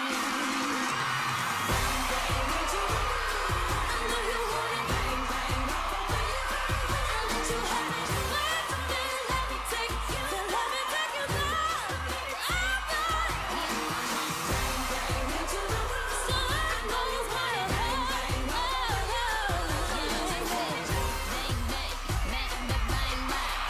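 Live pop performance: a woman singing into a microphone over a dance track. A heavy, pulsing bass beat comes in about two seconds in.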